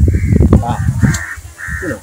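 A bird outdoors calling three times, each call short and even in pitch.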